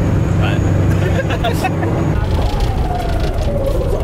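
Loud, steady engine and road drone inside the cabin of a Toyota AE86 at highway speed. The engine note falls over the last second or so as the car eases off.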